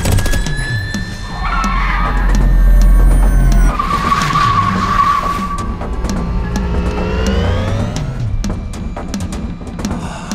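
Cars speeding in a chase, with a heavy low rumble loudest in the first half and a sustained tire squeal about four seconds in.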